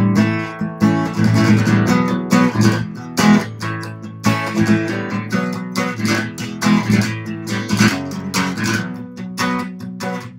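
Steel-string acoustic guitar strummed in a steady rhythm, playing a B minor, E, A chord progression that moves on to F sharp before returning to B.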